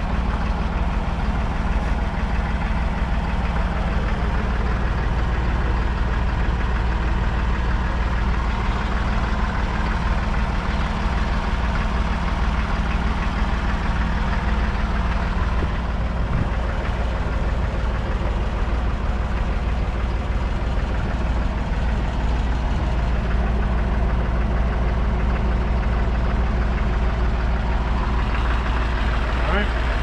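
Ford 5610 tractor's 4.2-litre four-cylinder diesel idling steadily with a low, even rumble.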